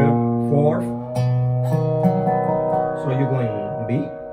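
Dobro (resonator guitar) played with a slide. Single notes are plucked over the first couple of seconds, some sliding into pitch, then held notes ring on. This is the melody modulating into B.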